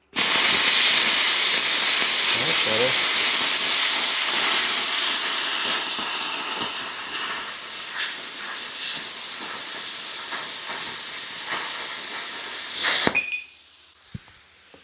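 ArcCaptain Cut 55 ProLux air plasma cutter cutting through an aluminium bar: a loud, steady hiss of the arc and air jet that starts abruptly and eases slightly as the cut goes on. It cuts off with a crack near the end, leaving a quieter hiss of air.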